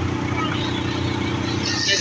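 A vehicle's engine running at a steady, even pitch while it drives along.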